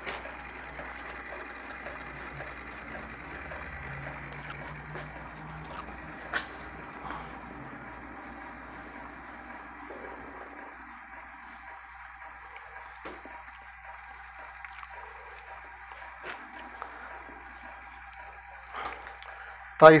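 Homemade magnet motor running: a small plastic bottle fitted with magnets turning on its axle beside a swinging magnet arm, giving a faint steady whirr with scattered light clicks.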